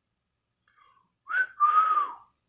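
A man whistling two notes: a short rising one, then a longer one held a little lower that falls away at its end.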